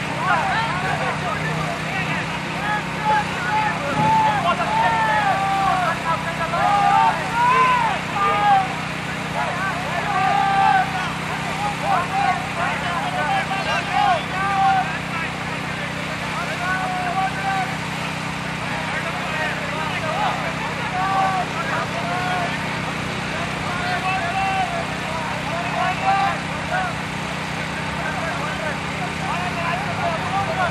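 Indistinct voices of people talking across the field, too far away to make out words, over a steady low hum.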